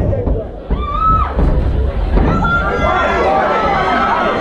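Fight crowd shouting: one loud drawn-out yell about a second in, then several voices calling out over each other.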